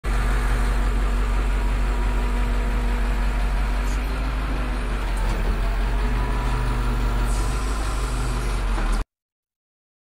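Flatbed tow truck's engine idling steadily, with a deep low hum; it cuts off suddenly near the end.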